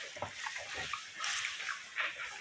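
Knife and fork cutting grilled beef on a wooden cutting board: faint, irregular scrapes and small clicks of metal against wood.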